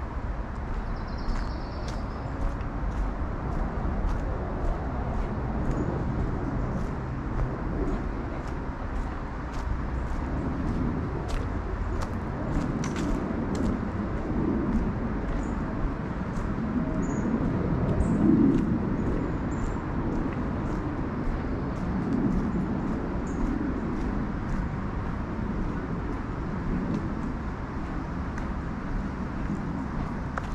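Steady roar of road traffic, swelling and fading as vehicles pass, loudest about eighteen seconds in. Over it come light irregular footsteps on the dirt trail and a few short bird chirps.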